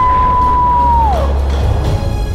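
A woman's long, excited "woo!" whoop: the pitch rises, holds steady for about a second, then drops away, over background music.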